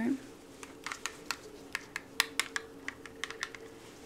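Quick, irregular light clicks and taps of a small plastic blood glucose monitor being handled, about fifteen to twenty in a few seconds.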